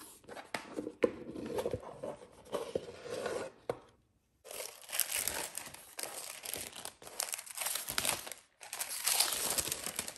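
A cardboard gift box handled with a few light knocks as its lid comes off, then white tissue paper crinkling as it is folded back, in two long stretches from about halfway.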